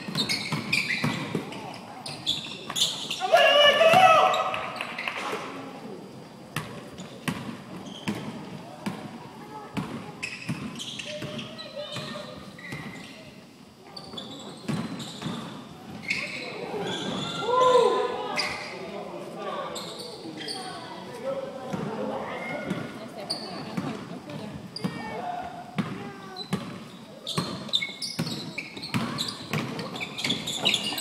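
Basketballs bouncing on a hardwood gym floor, a run of sharp knocks echoing in a large hall, with players' shouts and calls, loudest about four seconds in and again around seventeen seconds.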